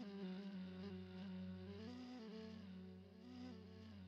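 Faint background music: a slow ney flute melody stepping gently up and down over a steady low drone.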